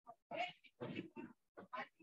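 A faint series of short vocal cries, about five in quick succession, the first and loudest near the start.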